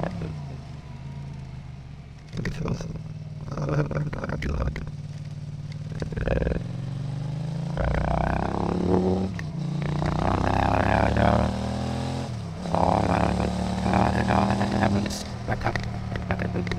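Motorcycle engine sound processed by AI speech enhancement: the engine note climbs and drops several times with the throttle, and the processing turns it into warbling, human-voice-like babble.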